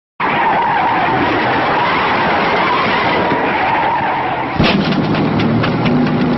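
Steady rushing wind and road noise of an open convertible on the move. About four and a half seconds in, music with a regular beat and a bass line comes in over it.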